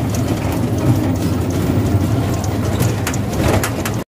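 Steady low engine rumble with rattling, heard from inside an open-sided motor vehicle on the move.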